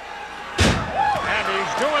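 One loud, heavy impact in a wrestling ring about half a second in, a blow landing and a body hitting the canvas-covered ring boards, followed by a brief ring-out. Voices follow.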